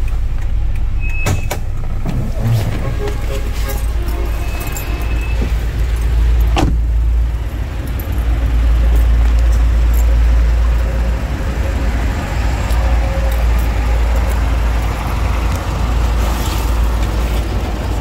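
Steady low rumble of a Toyota Innova's 2.0-litre petrol engine idling, with handling clicks and one car-door slam about six and a half seconds in.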